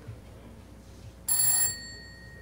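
A bell rings once, briefly and loudly, about one and a half seconds in. Its clear high tones fade quickly after the ring stops.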